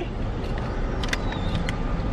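Steady low rumble of an idling car, heard from inside the cabin, with a few faint clicks about a second in.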